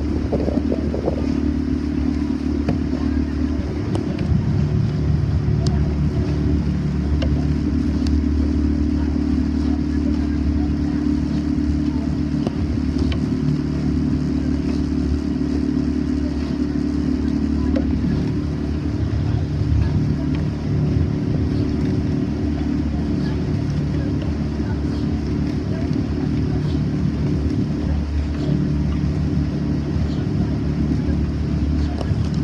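Motorboat engine running steadily at cruising speed, a constant low hum under a wash of wind and water noise.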